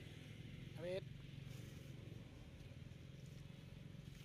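A short voice-like sound rising in pitch about a second in, then a faint steady low hum.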